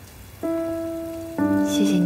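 Soft background score begins: a single held note comes in about half a second in, and a fuller sustained chord joins about a second and a half in, over a faint steady hiss.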